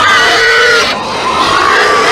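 Pig-like squealing and grunting in two drawn-out calls, the second starting about a second in.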